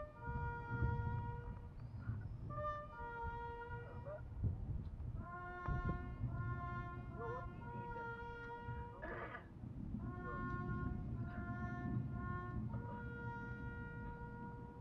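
A brass instrument playing a slow melody in one line of long held notes, with short breaks between phrases, heard from some distance across an open parade ground.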